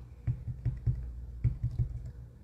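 A run of light, irregular clicks and taps, about five a second, over a steady low hum.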